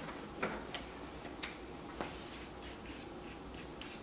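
Faint clicks, taps and rubbing of hands working at a paper poster board covered in sticky notes. There are a few sharper taps in the first half and a run of lighter ticks after.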